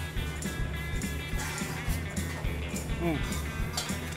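Background music with a steady low beat, and a man's brief "mm" of approval about three seconds in.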